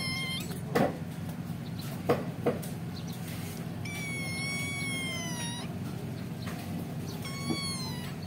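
Unweaned kitten mewing in thin, high-pitched cries: one call ending just after the start, a long drawn-out call around the middle, and another beginning near the end. A few short knocks fall between the calls.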